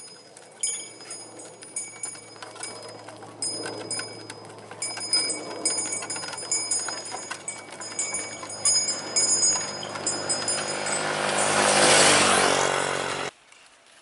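Bells on a team of yoked oxen ring in short irregular jingles over the clatter of a wooden-wheeled ox cart. Underneath, a motor vehicle's engine hum grows steadily louder until it is loudest near the end, then cuts off suddenly.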